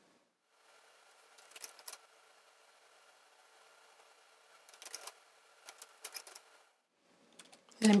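Faint, scattered small clicks of a metal transfer tool catching yarn and lifting stitches back onto the plastic needles of an LK150 knitting machine, with a faint steady hum underneath.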